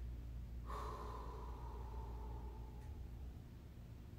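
A man's long breathy exhale, like a sigh, starting suddenly about a second in and fading away over about two seconds.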